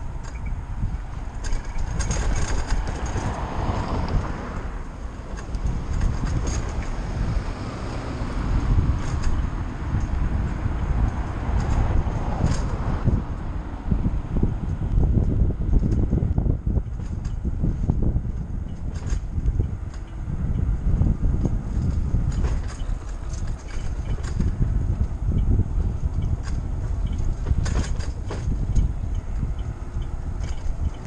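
Wind buffeting the microphone of a handlebar-mounted camera on a moving bicycle, a strong fluctuating rumble with road noise under it. Scattered clicks and rattles come through the whole time.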